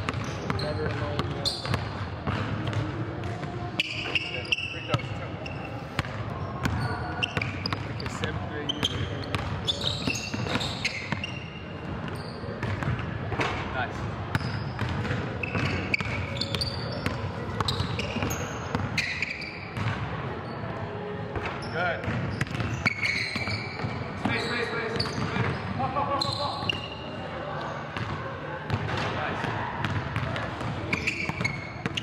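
A basketball being dribbled hard on a hardwood gym floor, bounce after bounce, echoing in a large gym. Short, high sneaker squeaks come and go throughout.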